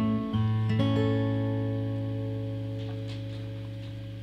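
Taylor 114e steel-string acoustic guitar, fingerpicked: a few last notes in the first second, then a final chord left to ring and fade slowly as the piece closes.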